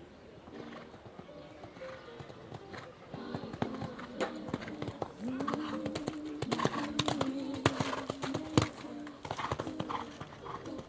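Horse's hoofbeats, irregular knocks that grow louder and closer together from about three seconds in, with a single held tone lasting a few seconds in the middle.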